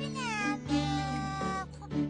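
One drawn-out, meow-like cry from a cartoon character, falling in pitch over about a second and a half. Steady background music plays underneath.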